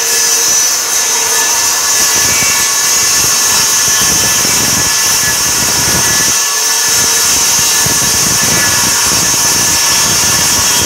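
Circular saw running at full speed and cutting through a plywood sheet in one long, steady cut, its motor whine holding level.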